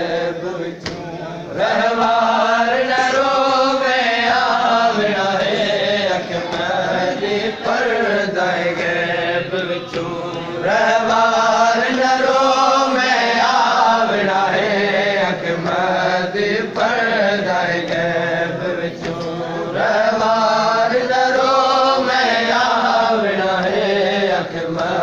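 Men's voices chanting a noha, a Shia lament, in long phrases whose pitch rises and falls, with brief dips between phrases about every nine seconds.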